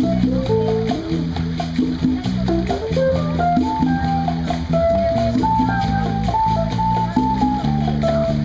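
Live band playing amplified through PA speakers: a melody of held notes, likely from the saxophone, over guitar, bass and hand drums such as congas, in a steady rhythm.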